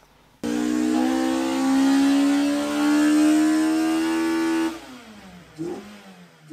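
Car engine held at high revs, its pitch climbing slowly and then holding. It cuts in suddenly about half a second in and dies away after about four seconds.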